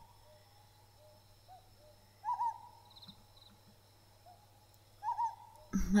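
Owl hooting twice, a short two-note call coming about every three seconds, over a quiet forest ambience with faint bird chirps.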